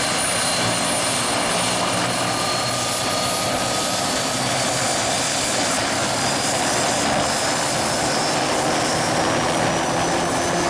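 A Bell 206 JetRanger-type turbine helicopter runs steadily on the ground with its rotor turning. A high, steady turbine whine sits over the rotor and engine noise.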